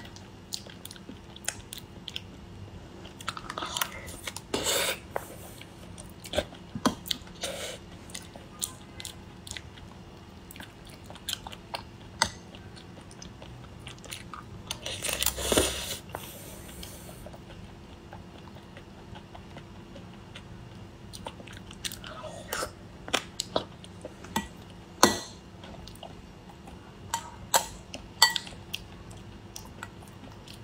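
Close-miked chewing and eating of a soft, sticky sea urchin and natto rice bowl, with frequent short clicks as a metal spoon stirs and scrapes in a glass bowl. A few louder mouthfuls stand out, the longest about halfway through.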